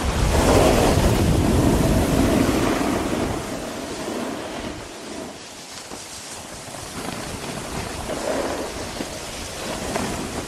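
Wind rushing over an action camera's microphone during a downhill snowboard run, mixed with the scrape of snowboards on packed snow. It is loudest in the first few seconds, eases off for a few seconds mid-way, then builds again.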